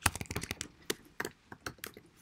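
Typing on a computer keyboard: an irregular run of quick keystroke clicks.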